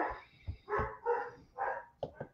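A dog barking three times in short calls.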